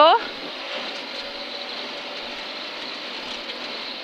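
Steady engine and tyre-on-gravel noise inside a rally car's cabin at speed, a constant muffled rush with no gear changes or revving heard.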